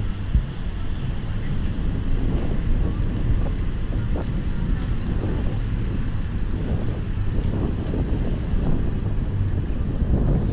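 Wind buffeting the microphone of a camera carried on a moving Segway Mini Pro: a steady, uneven low rumble.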